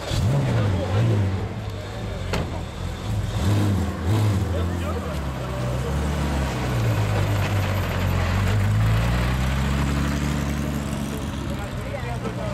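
Porsche 911 rally car's flat-six engine starting up and being blipped in short revs, then running steadily before its note rises near the end as the car pulls away. People talk nearby.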